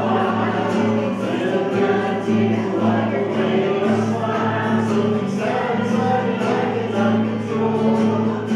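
A roomful of people singing a worship song together, accompanied by acoustic guitar.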